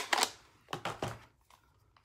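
Plastic ink pad case being picked up and handled: a sharp click right at the start, then a few soft knocks and rubs during the first second, fading out after that.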